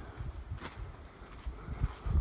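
Wind buffeting the microphone: an uneven low rumble, with a faint click about two-thirds of a second in.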